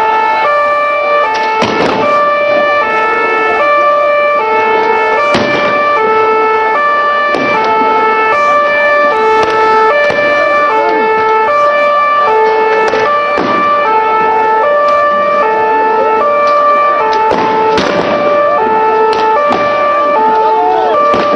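A two-tone siren alternating steadily between a high and a low pitch, with about five sharp bangs scattered through it.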